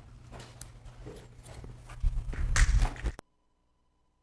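Handling and rubbing noise on a body-worn microphone: faint rustles and small knocks, then louder rubbing and knocking with a heavy low rumble about two seconds in. The sound cuts off abruptly just after three seconds.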